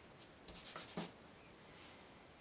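Faint room tone with a short cluster of light clicks and scratches about half a second to a second in, from a paintbrush being handled and worked.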